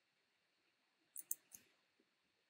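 Computer mouse button clicking: three short, sharp clicks in quick succession a little past a second in.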